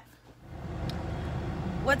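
Steady low rumble of a car's cabin and engine, heard from inside the car. It comes in about half a second in, after a brief lull.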